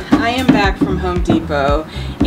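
A woman talking over background music with a low, steady bass line; no work sound stands out.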